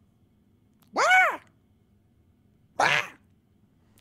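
A man imitating crazy screams with his voice: a short, high-pitched yelp that rises and falls about a second in, then a raspy, hissing screech near the end of the third second.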